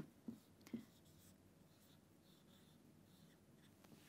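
Faint sound of a marker writing on a whiteboard, a few separate short strokes, in near silence, with a couple of faint short sounds in the first second.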